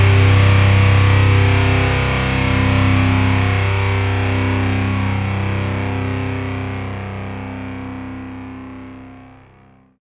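Distorted electric guitars holding a closing chord of a death/thrash metal song, the chord shifting slightly about two seconds in, then ringing out and fading away.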